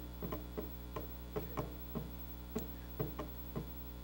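Computer keyboard keys tapped at an uneven pace, a few keystrokes a second with some in quick pairs, over a steady electrical hum.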